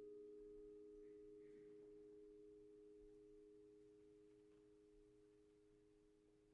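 A very quiet chord of a few steady low tones from mallet percussion, struck just before and slowly dying away as it rings.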